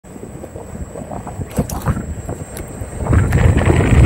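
Wind buffeting the camera microphone as an electric unicycle rides off, a low rumble that builds up loudly about three seconds in. Before it, a few scattered clicks and knocks.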